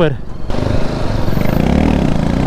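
Motorcycle engine running steadily at low road speed, heard from the rider's own bike, with road noise.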